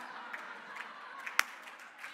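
Audience applauding and cheering, with scattered claps and crowd noise, and one loud sharp click about one and a half seconds in.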